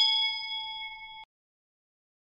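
Notification-bell chime sound effect from a subscribe animation: a bright ding of several ringing tones, fading and then cut off abruptly a little over a second in.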